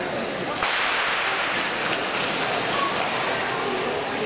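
A short-track race start: a sharp starting-gun crack about half a second in, followed by the steady scraping hiss of several skaters' blades digging into the ice.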